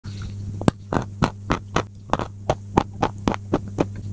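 Close-miked crunchy chewing: about a dozen sharp crunches in quick, even succession, roughly four a second, over a steady low electrical hum.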